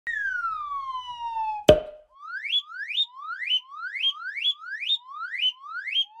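Cartoon sound effects: a falling whistle for about a second and a half, ending in a sharp thump, then a quick run of short rising whistles, about two a second.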